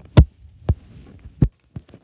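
Three dull thumps within the first second and a half, the first the loudest, followed by a few faint clicks.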